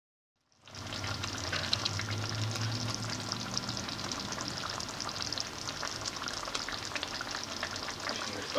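Pork menudo stew sizzling and bubbling in a pan, a steady dense crackle of small pops that fades in just under a second in. A low hum runs underneath for the first few seconds.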